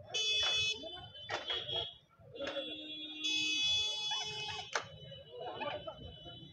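High-pitched electronic horns sounding in steady blasts, a short one at the start and a longer one of about a second and a half past the middle, over the murmur of a crowded street. Sharp knocks come between them, in keeping with stalls being broken down.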